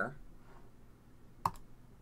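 A single short, sharp click about one and a half seconds in, from a stone being placed on a computer Go board, over quiet room tone.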